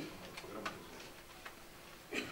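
Quiet room tone with a few faint, sharp clicks in the first second.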